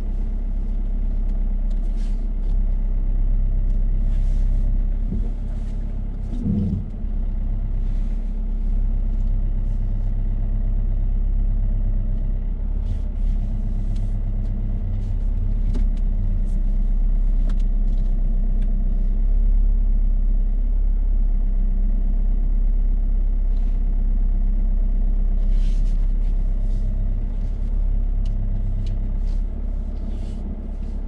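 Car engine running at low revs, heard from inside the cabin as the car reverses slowly: a steady low rumble with a few faint clicks.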